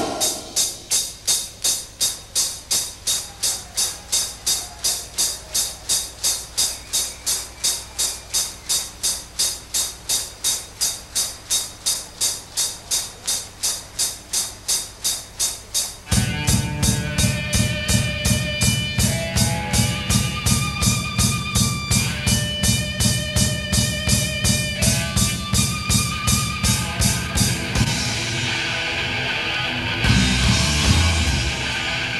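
Live heavy metal band. For the first half the drum kit alone keeps a steady even beat, about three strokes a second, over a low drone. About sixteen seconds in, bass and electric guitar come back in with a melodic line over the beat.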